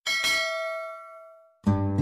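A single bell-like notification 'ding' sound effect, struck once and ringing out over about a second and a half. Music starts near the end.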